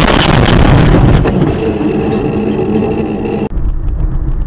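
Dashcam recording of a car crash: a loud, noisy jumble of impacts and scraping in the first second or so, then a steady droning tone for about two seconds that cuts off suddenly. Quieter road noise from the next clip follows.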